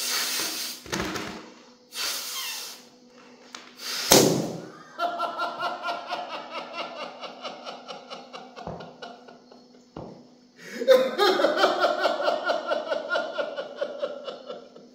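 Breaths blown into a rubber balloon, then a sudden loud burst of air about four seconds in, followed by about five seconds of a buzzing, fast-pulsing squeal, air escaping through the neck of the released balloon. A second pulsing stretch of sound follows near the end.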